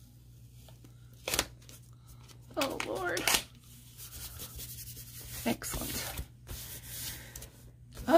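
Hands pressing and rubbing a printed paper calendar sheet flat onto a notebook page, a dry paper rubbing through the second half. A sharp tick comes about a second in and a brief wordless vocal sound about three seconds in, over a low steady hum.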